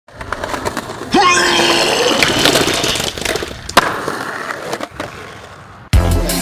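Skateboard rolling, its wheels rumbling over a rough surface, with a sharp crack of the board near the four-second mark. A short rising tone comes in about a second in. The sound fades and cuts off suddenly just before the end.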